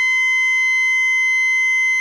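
A single high electric guitar note from an Ibanez JS1BKP, held indefinitely by its Sustainiac sustainer in Normal mode through a Fender Twin Reverb amp. It rings at a steady pitch and level without decaying, the plain endless sustain of the Normal setting with no harmonic overtone blended in.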